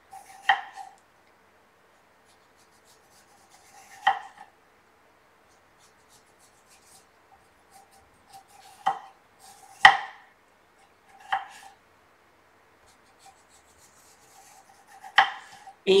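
A kitchen knife knocking on a wooden cutting board about six times, a few seconds apart and unevenly spaced, as strips of skin are sliced down an upright English cucumber. The loudest knock comes about two-thirds of the way through.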